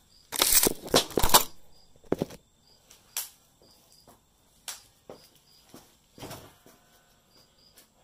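Handling noise of a phone camera being set down and propped in place: a burst of rubbing and knocking in the first second and a half, then a few sharp clicks and taps as it is settled.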